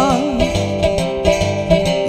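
Resonator guitar played in a steady blues rhythm, with even, pulsing bass notes under chords. A held sung note with vibrato trails off about half a second in.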